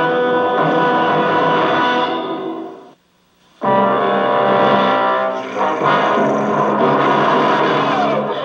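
Dramatic brass-led music score from a 1960s TV episode's soundtrack, played through an old console television's speaker. About three seconds in, the music fades into a brief gap of near silence, then comes back in full.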